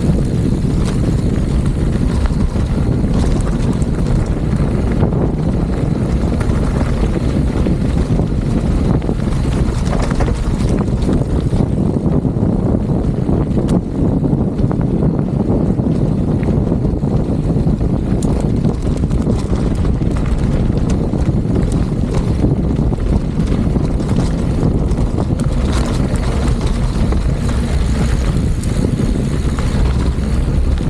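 Wind buffeting the camera microphone on a fast mountain-bike descent, a loud steady roar, mixed with the bike's tyres rolling over loose gravel.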